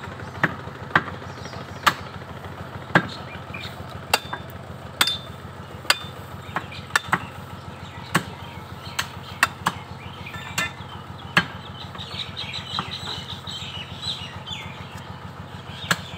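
Sharp, irregular chops and knocks from a butcher's cleaver and knife striking a hanging beef carcass, roughly one a second. Under them runs a steady low hum like an idling engine.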